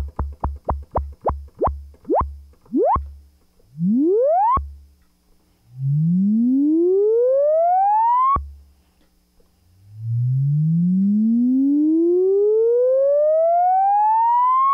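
Minimoog synthesizer playing a low note again and again while its filter contour attack time is turned up. The notes start as quick plucks about four a second and then become slower and slower rising filter sweeps, the last lasting nearly five seconds, each cut off sharply at the key's release. The restored filter contour's attack control is working.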